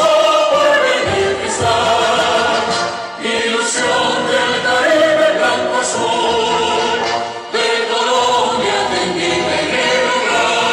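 Many students' voices singing together in chorus, with brief pauses between phrases.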